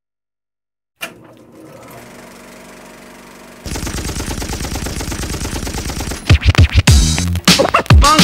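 Near silence, then about a second in a quiet steady running sound. About three and a half seconds in it turns into the loud, fast, even clatter of a film projector running. About six seconds in, loud music with heavy hits cuts in.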